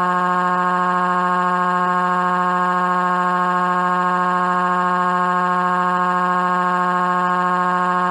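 A long crying wail from a synthesized text-to-speech voice, held on one flat, unwavering pitch at a steady loudness.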